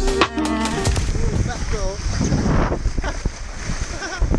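Background music that cuts off about a second in, giving way to wind buffeting an action-camera microphone and water rushing past a kite skate ridden on the water, with a brief voice sound in the middle.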